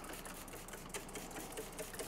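Faint, fine ticking and rubbing from a hand working over a glossy, waxed test panel as isopropyl alcohol is wiped around on it.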